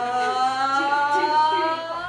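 A group of young women singing one long held chord on an "oh" vowel, unaccompanied, their voices gliding slowly upward together before fading near the end.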